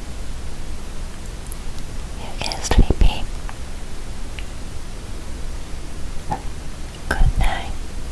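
Whispering close to the microphone, in two short bursts about two and a half seconds in and seven seconds in, over a steady low hum.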